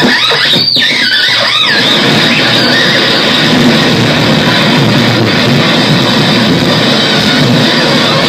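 Loud, dense electronic noise from a tabletop rig of effects and noise electronics, with swooping pitch sweeps in the first two seconds that give way to a steady, distorted wall of noise.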